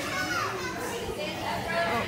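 Indistinct chatter of children and other people, their voices overlapping; no fan noise stands out.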